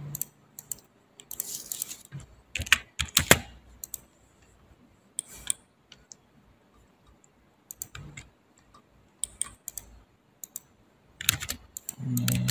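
Computer keyboard keys tapped in short, irregular bursts with quiet gaps between.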